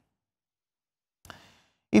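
Near silence, then a short breath drawn in by the male presenter about a second and a quarter in, just before he starts speaking again at the very end.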